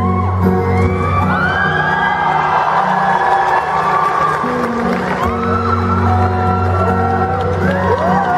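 Solo acoustic guitar played live, steady held chords and notes, with an audience whooping and cheering over it from about a second in.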